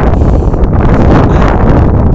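Strong wind blowing across the camera's microphone: a loud, steady, deep rush.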